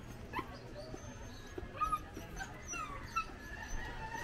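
A dog whimpering with a series of short high whines and yips, the loudest a little before halfway.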